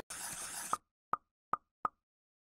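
Four short, pitched pop sound effects about 0.4 s apart, separated by dead silence; a faint hiss runs up to the first pop and cuts off just after it.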